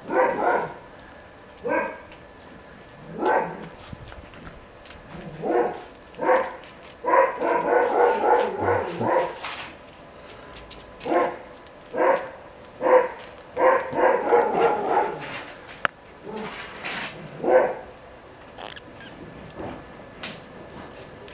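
Repeated short animal calls, some single and some in quick runs of several, each a brief pitched yelp.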